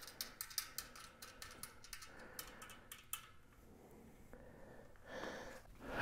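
Faint small clicks and ticks of fingers threading a small lock nut onto a tubeless valve stem in a mountain-bike rim, busiest in the first three seconds. A brief soft rustle near the end.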